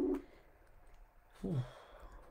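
A voice trailing off at the start, then quiet room, then about one and a half seconds in a short vocal sound that falls in pitch, like a sigh.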